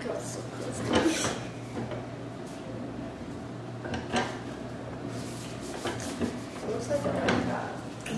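Small tabletop etching press being hand-cranked, its steel roller and felt-covered bed rolling through with a few knocks.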